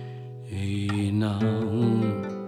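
Nylon-string classical guitar playing between sung lines: a chord rings and fades, then a new fingerpicked phrase starts about half a second in.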